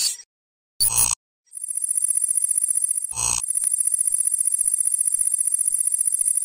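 Synthetic logo-intro sound effect: a short noisy burst about a second in, then a high, rapidly pulsing ringing tone, with a second brief burst about three seconds in.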